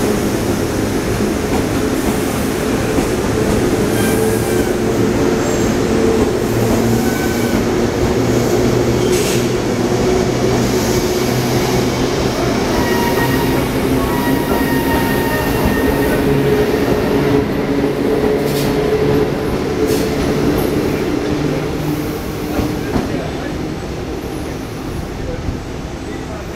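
Taiwan Railways EMU1200 Tze-Chiang express electric multiple unit running past as it departs: a loud, steady rolling rumble with a low hum, a few short high tones and occasional sharp clicks. It fades over the last few seconds as the train moves away.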